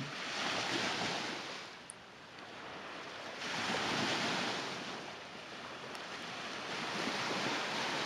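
Small lake waves breaking and washing up a sandy beach, the surf swelling and easing twice.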